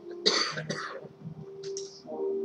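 A person coughing: two short, sharp coughs in quick succession a quarter of a second in, with a faint steady held note underneath.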